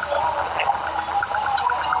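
Street noise of a crowded takbir procession heard through a phone livestream: a steady held tone under a fast, even ticking of about seven beats a second, with two faint clicks near the end.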